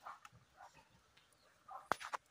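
A few faint, short animal calls, with one sharp crack just before the end.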